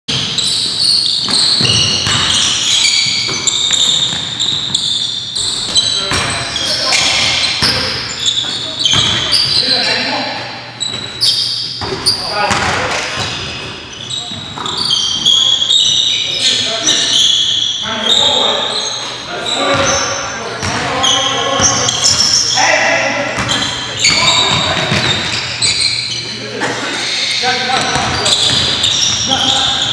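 Basketball game in a gym: a basketball bouncing on the hardwood floor, sneakers squeaking and players calling out, echoing in the hall.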